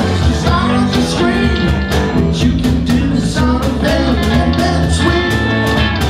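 Live rock and roll band playing: electric guitars over a steady beat, with singing.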